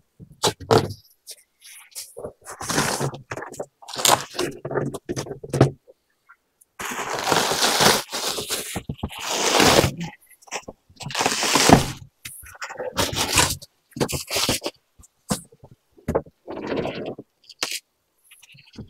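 Packing being pulled out of a large cardboard box: rustling and crinkling of honeycomb kraft-paper wrap, plastic bags and bubble wrap, with cardboard flaps scraping. It comes in irregular bursts, the longest and loudest starting about seven seconds in.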